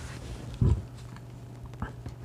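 A short low grunt-like murmur from a man's voice about half a second in, with a faint click near the end, over a steady low hum.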